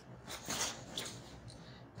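Printed fabric rustling softly as hands fold it and smooth it flat on a table, with a few brief, faint scuffs.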